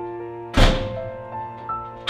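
A front door shutting with a single thunk about half a second in, over background music of sustained, slowly changing notes.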